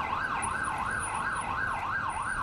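Police car siren in a rapid yelp, its pitch sweeping up and down about three times a second.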